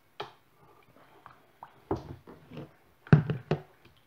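A whisk knocking and scraping against a saucepan while a thick starch mixture is stirred: one knock just after the start, a couple around the middle, and three quick, louder knocks near the end.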